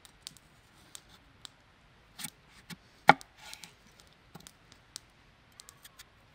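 Kitchen knife slicing a peeled raw potato on a wooden cutting board: scattered sharp cuts and taps of the blade, the loudest about three seconds in.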